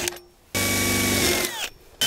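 Cordless DeWalt 20V drill with a metal drill bit boring through galvanized sheet-metal pipe. One burst of about a second starts about half a second in, and its whine falls away as the drill stops.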